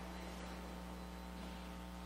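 Steady electrical mains hum on the audio feed, a low buzzing tone with faint higher overtones that does not change.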